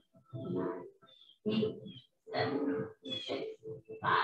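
A person's voice talking in short phrases, with no clear words.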